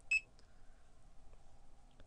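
Barcode scanner giving one short, high beep as it reads an item's barcode.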